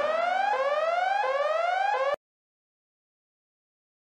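Electronic siren-like alarm of a ringtone: a rising whoop that repeats about every two-thirds of a second over a low steady hum, cutting off suddenly about two seconds in.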